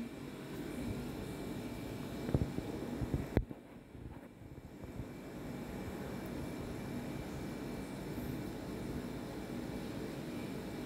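Steady fan-like hum and hiss in a small room, with a few faint knocks between about two and three and a half seconds in.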